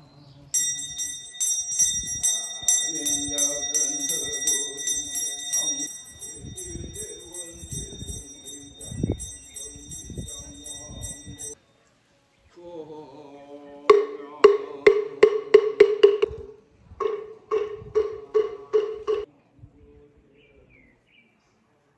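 Buddhist chanting with a small bell shaken rapidly and ringing steadily, which cuts off abruptly about halfway through. After a short gap, a wooden moktak (wooden fish) is struck in two quick runs, about eight strikes and then about six.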